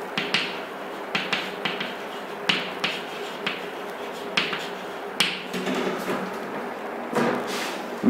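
Chalk writing on a chalkboard: a string of short, sharp taps and scratches as the chalk strikes and drags across the board, uneven and a few to the second at times, over a steady low hum. A louder rustle comes near the end.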